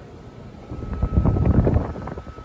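Air blown out by the fan of a running side-discharge heat pump outdoor unit buffets the microphone held against its grille, making a low rumbling wind noise. It builds about half a second in and is loudest in the second half.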